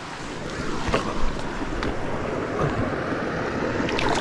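Steady rush of moving water with wind noise on the microphone.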